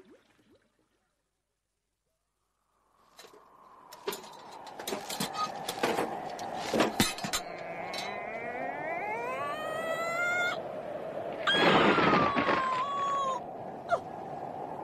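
Radio-drama sound effects for a night-time winter forest: after about three seconds of silence, a steady whistling drone fades in, with a long rising howl and then a louder falling howl near the end, over scattered clicks and crunches.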